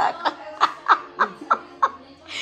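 A woman laughing: a string of about seven short laughing breaths, each dropping in pitch, roughly three a second, fading near the end.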